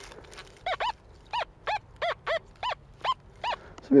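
XP Deus metal detector on Gary's Deep Relic program, heard through the remote's speaker, sounding on a target: about nine short squeaky tones, roughly three a second, each rising and falling in pitch as the coil passes over the metal. A faint constant threshold buzz runs underneath.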